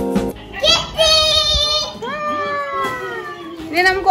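Guitar music cuts off just after the start. Then a young child's high voice makes two long, drawn-out calls, the second starting about two seconds in and sinking slightly in pitch as it goes.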